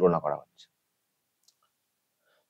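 A man's speaking voice ending a word in the first half-second, then a pause of near silence broken by one or two faint clicks.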